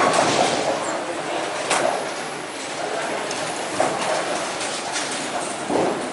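Bowling alley din: a steady rolling rumble from balls on the lanes, sharp clatters of pins and balls every couple of seconds, and people talking.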